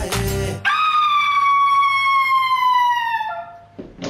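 The song cuts off and a woman screams: one long high scream that falls slowly in pitch for about two and a half seconds, drops lower near the end and fades.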